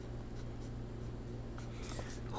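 Pencil writing letters on paper: faint, irregular scratching strokes of the graphite tip across the sheet.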